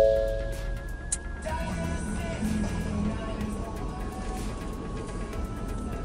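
Ford F-series pickup's dashboard chime tones sounding at the start, then the truck's engine starting about a second and a half in and settling into a steady idle.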